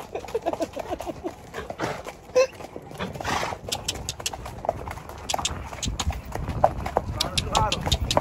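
Horses' hooves clip-clopping on a dirt trail, sharp hoof clicks coming thickly through the second half, with faint voices underneath.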